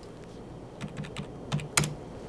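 Computer keyboard being typed on: a quick run of about six light key clicks in the second half, the loudest near the end. The stock code is being keyed in to call up its chart.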